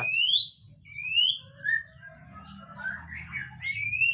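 A young male white-rumped shama calling: a string of short, clear whistles, most of them rising in pitch, about one every second.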